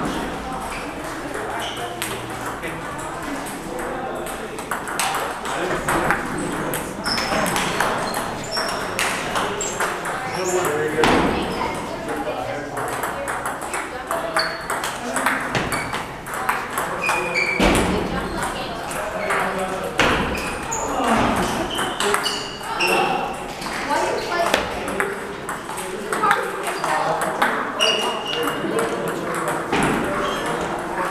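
Table tennis balls clicking off paddles and tables in rallies, the near table's hits mixed with the irregular pinging of balls from many other tables in a large hall. Voices chatter in the background.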